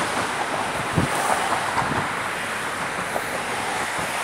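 Steady road-traffic noise on the bridge mixed with wind on the microphone, with a brief low bump about a second in.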